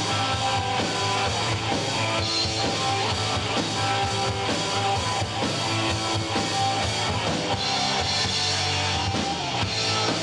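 Live rock band playing an instrumental passage of a song: electric guitars and bass over a drum kit keeping a steady beat, with no vocals.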